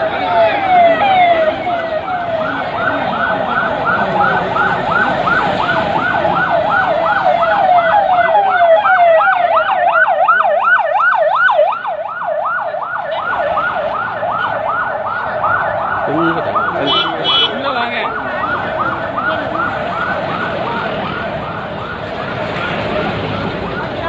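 Vehicle siren in a fast yelp, its pitch sweeping rapidly up and down several times a second.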